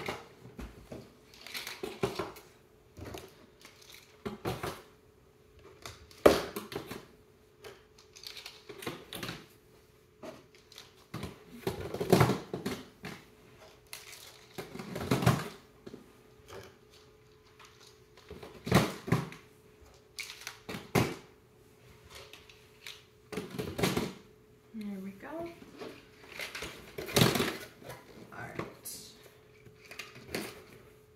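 Plastic packaging crinkling and small plastic pieces clicking and knocking on a tabletop as a small kit package is opened and sorted through, in short irregular bursts over a faint steady hum.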